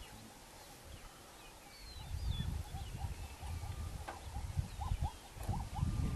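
Wildlife field sound: small birds chirping over a low rumble of wind. From about four and a half seconds in comes a run of short squealing animal calls, two or three a second.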